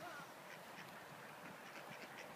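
Ducks quacking faintly.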